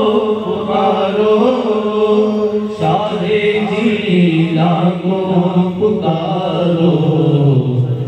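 Several men singing a devotional chant together into microphones, with long held, wavering notes and voices overlapping.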